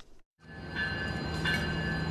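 COASTER commuter train approaching along the tracks, its rumble and a low steady engine tone running under a high tone that sounds in short pulses a little more than once a second. The sound comes in after a brief dropout at the start.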